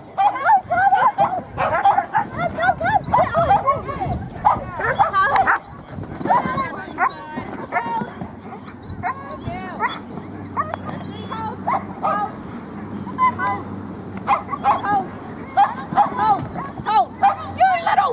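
Dogs barking and yipping excitedly in quick repeated bursts, densest in the first few seconds, then more scattered after a short lull.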